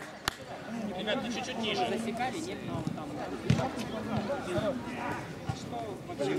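Faint voices of football players calling out across an outdoor pitch, with a few sharp knocks of the ball being kicked, the clearest about three and a half seconds in.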